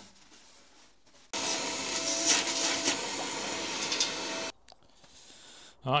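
A small electric motor-driven tool runs for about three seconds with a steady whine, starting and stopping abruptly, after faint rubbing of a cloth in the engine bay.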